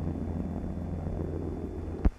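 The Hughes H-4 Hercules flying boat's Pratt & Whitney R-4360 radial engines running in an old archival recording: a steady, low propeller drone with a hiss over it.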